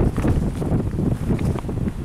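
Strong wind buffeting the camera's microphone: a loud, uneven low rumble that rises and falls with the gusts.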